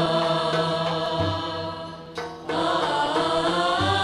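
Gharnati (Andalusi) ensemble singing a long, slow melody in unison with string accompaniment. The music fades briefly about halfway through, then resumes.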